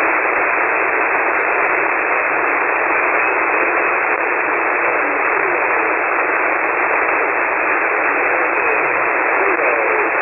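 Shortwave receiver static on the 40-metre band, heard through a web SDR in SSB mode: a steady, narrow hiss with no deep bass or high treble. A weak single-sideband voice can just be made out in the noise, mostly in the second half, a signal at the edge of readability.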